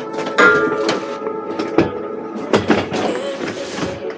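Several sharp knocks and clattering from luggage being handled at a metal train luggage rack and a carriage door, loudest about half a second in and again about two and a half seconds in. Background music carries on underneath.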